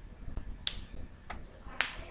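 A few short, sharp clicks, the two loudest about two-thirds of a second in and shortly before the end.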